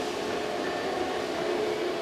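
A steady mechanical hum with hiss and faint steady tones.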